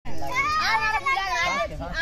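Children talking and calling out to each other.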